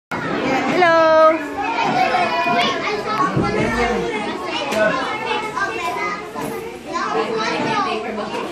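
A crowd of young children talking and calling out at once in a room, with one loud, high call about a second in.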